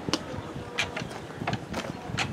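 A few light, separate mechanical clicks from handling a motorcycle's controls, with a faint steady hum in the first second; the engine is not running.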